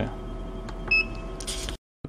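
Steady electrical hum of a CO2 laser cutting machine, with one short high electronic beep about halfway through and a brief hiss before the sound cuts off suddenly near the end.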